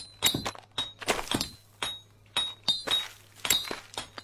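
Sharp metallic clinks and knocks of work tools striking, irregular at about three to five strokes a second, many of them leaving a short high ring, with a brief lull a little past the middle.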